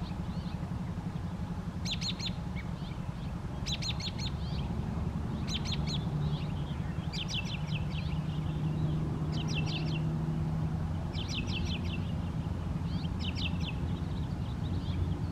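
A songbird sings short phrases of rapid, downward-slurred chirps, repeated about every two seconds, over a steady low outdoor rumble with a faint hum in the middle.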